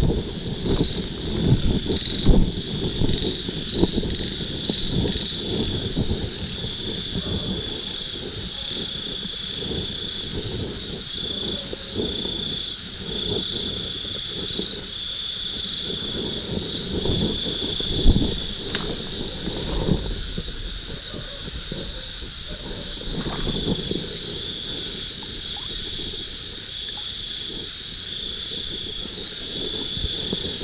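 Night chorus of insects chirping steadily in a high pulsing rhythm, about three pulses a second, with a thinner, higher trill coming and going. Underneath are low rumbling and a few thumps from movement and handling close to the microphone, loudest near the start and about 18 seconds in.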